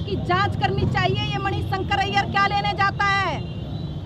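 A woman speaking into reporters' microphones, her phrase ending with a falling pitch near the end. A steady low rumble sits underneath.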